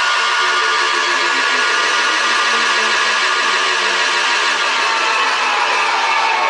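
Hardcore techno breakdown played loud over a club sound system: the kick drum is gone, leaving a sustained distorted synth wash with a short stepping riff repeating underneath.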